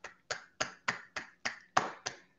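A single person clapping in applause, sharp separate claps at a steady pace of about three and a half a second.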